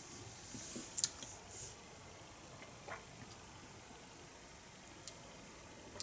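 Quiet room with a few faint small clicks, the clearest about a second in and a sharp one about five seconds in.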